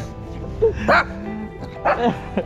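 Shih Tzu dogs giving short, excited barks and yips in greeting, with sharp calls at about half a second, one second, and again near the end, over steady background music.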